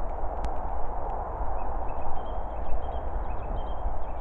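Continuous rustling and handling noise with a low rumble on the microphone as a handheld camera is swung around in woodland. There is a sharp click about half a second in, and a few faint high chirps in the middle.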